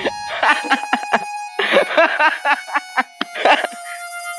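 A person's voice in short bursts, three groups of syllables, over held background-music tones.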